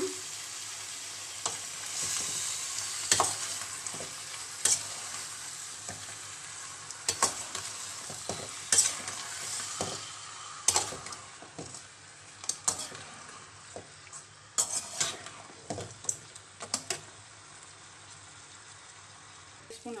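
Chicken pieces sizzling in a metal kadai as they are stirred with a perforated metal spoon, which clinks and scrapes against the pan at irregular moments. The sizzle grows quieter toward the end.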